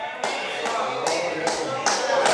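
A slow series of sharp taps, about five of them roughly two a second, over a faint background of voices or music.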